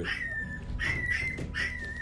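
Newborn puppies whining in about three short, thin, high-pitched cries, each falling slightly in pitch.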